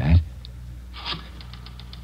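Rotary telephone dial being turned and run back, a short scrape followed by a quick, even run of light clicks in the second half, over a steady low hum.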